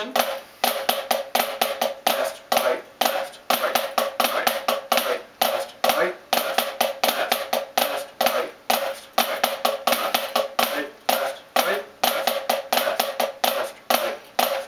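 Drumsticks on a practice pad playing Swiss triplets, which are flam-led triplet groups, switching between right-hand-led and left-hand-led triplets by way of alternating flams. It is a steady, unbroken stream of quick grouped stick strokes.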